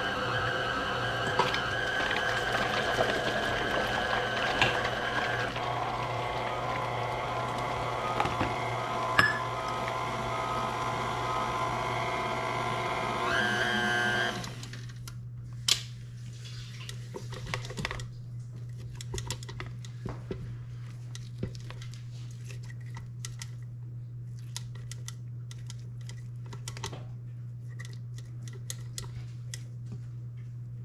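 KitchenAid tilt-head stand mixer's motor whining steadily as its wire whip beats a thick carrot cake batter. It changes pitch a few seconds in and briefly speeds up before switching off about halfway through. After that a spatula scraping the whip and the steel bowl makes a scattered series of small clicks and taps.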